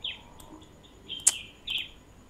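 Repeated short high animal chirps, each sliding down in pitch, with one sharp click a little over a second in.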